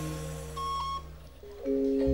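A lull in a live campursari band's playing: held low notes fade away, a short higher note sounds about halfway through, and new held notes come in near the end.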